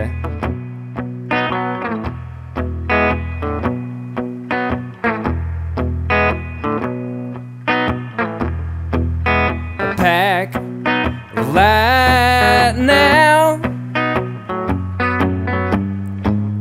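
Gibson Les Paul electric guitar playing a song's intro through an amp: picked notes over a low bass note that changes about every second. A wordless vocal line with vibrato comes in briefly about two thirds of the way through.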